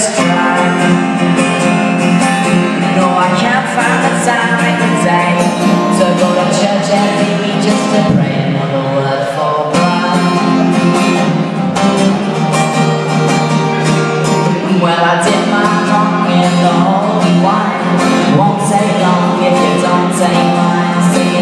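Acoustic guitar played live in a solo blues song, with a voice singing over it at times.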